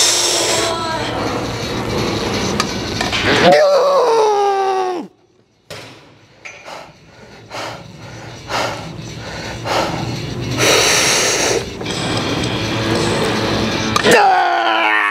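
A man straining through a heavy set on a plate-loaded hack squat: a loud, long falling groan a few seconds in, then a quieter stretch of hard breaths. Music plays underneath.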